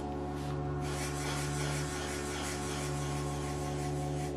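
Black permanent marker rubbing and scratching on paper as small areas are coloured in, over soft, steady background music.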